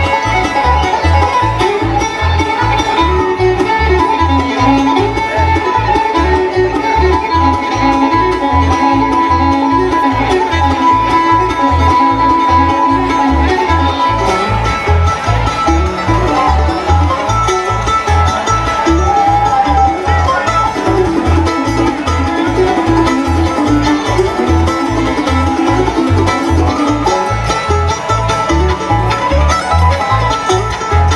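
Live bluegrass band playing an old-time fiddle tune as an instrumental: banjo and fiddle over acoustic guitar and mandolin, with upright bass keeping a steady beat. The melody shifts to a new pattern about halfway through.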